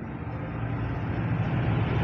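A steady low rumble with a hiss over it, slowly growing louder.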